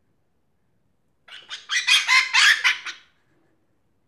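African grey parrot giving a loud burst of rapid short calls, about ten in quick succession, starting a little over a second in and lasting under two seconds.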